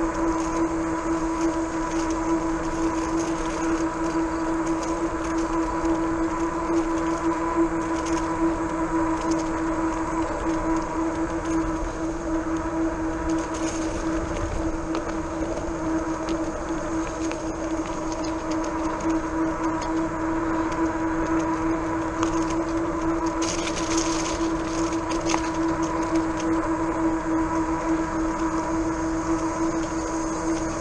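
RadRover fat-tire e-bike cruising at steady speed on a paved trail: a constant droning whine from its rear hub motor and fat tyres rolling on the asphalt. A few faint crackles come partway through and again later.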